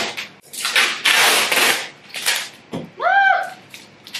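Clear packing tape being pulled off the roll onto a cardboard box: a short rip, then a longer rip of about a second, then another short one. A brief voiced exclamation comes near the end.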